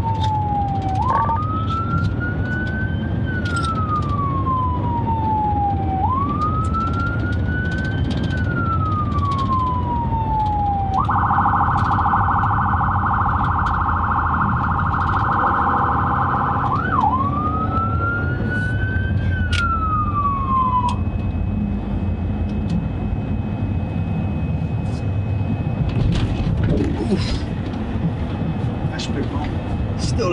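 Police car electronic siren heard from inside the cabin: a wail rising and falling over about five seconds per cycle, switching to a rapid yelp for about five seconds midway, then back to the wail before cutting off about two-thirds of the way in. Steady engine and road noise underneath throughout.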